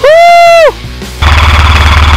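Loud montage music: a held, voice-like note that bends up and falls off, then after a brief gap about a second of dense, buzzing sound with heavy bass.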